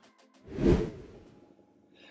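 A transition whoosh sound effect that swells and fades in under a second, starting about half a second in, over a cut between shots.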